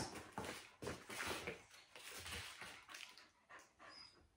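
Faint, irregular soft steps and rustles of a large dog walking and stepping up onto foam balance pads.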